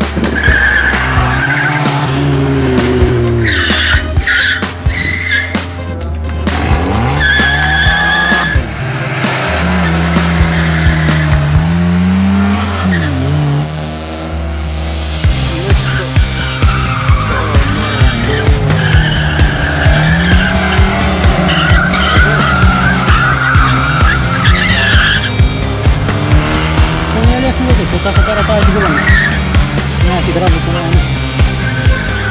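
A competition buggy, then a classic Lada saloon, driven hard through a gymkhana cone course: the engine pitch climbs and falls repeatedly with throttle and gear changes, and the tyres squeal in the turns. Music plays underneath.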